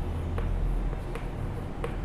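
Chalk tapping against a blackboard while letters are written: three short, sharp ticks spread across two seconds, over a steady low hum.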